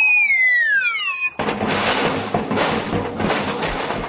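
Radio comedy sound effect of a man falling from a window: a whistle gliding steadily down in pitch for just over a second, then a sudden loud, noisy crash that carries on to the end.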